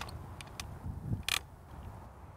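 Clicks and a short scrape as an overhead faulted circuit indicator is hooked onto the attachment head of a hot stick: a sharp click at the start, a couple of faint ticks, then a brief scrape a little over a second in.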